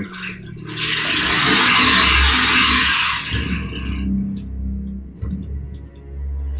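Animated film soundtrack: a loud rushing whoosh over a deep rumble and the score. It swells about a second in and fades by about four seconds, leaving quieter score with a few light clicks.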